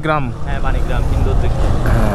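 Steady low rumble of a moving road vehicle's engine and the wind rushing over the microphone as it travels along a paved road.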